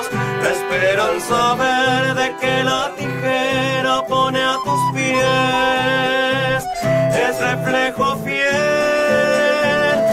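Live folk song played on a Piermaria button accordion with long held chords and a strummed acoustic guitar, with two men singing.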